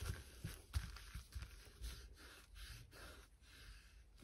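Fingertips rubbing and pressing release paper flat over a double-sided-adhesive diamond-painting canvas: faint soft brushing with several light taps, mostly in the first two seconds.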